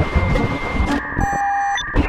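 Electronic glitch sound effects in an intro: crackling static with low thuds, then about a second in a held electronic beep of several steady tones that cuts off suddenly.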